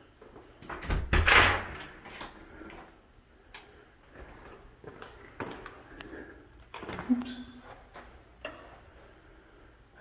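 An interior door opening, with a loud rush of noise about a second in, followed by scattered small clicks and knocks.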